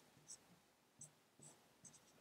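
Faint dry-erase marker strokes on a whiteboard, a few short scratches while a formula is written, barely above room tone.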